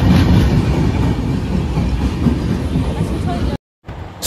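Indian Railways passenger coaches rolling past close by as the train pulls into the platform: a loud, steady rumble of wheels on rail that cuts off abruptly about three and a half seconds in.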